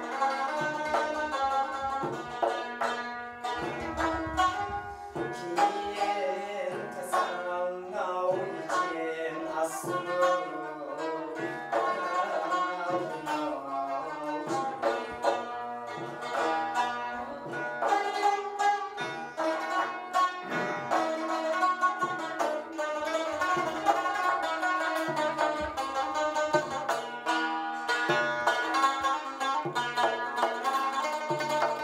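Tajik folk music: a long-necked plucked lute playing a busy, steady melody with frame drum (doira) strokes underneath.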